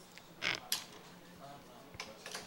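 A short creak about half a second in, then a single sharp click, picked up close to a desk microphone.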